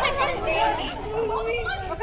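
Several voices talking and calling out over one another: group chatter.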